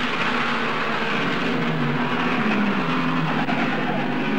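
Racing car engines running at high revs, the engine note shifting up and down in pitch as the cars pass, over a hissy old newsreel soundtrack.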